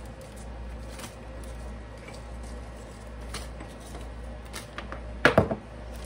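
Light clicks and taps of Ritz crackers being taken out of their package, with a louder knock and rustle about five seconds in, over a low steady hum.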